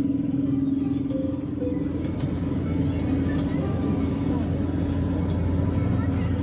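Chatter of a large outdoor crowd over a steady low rumble.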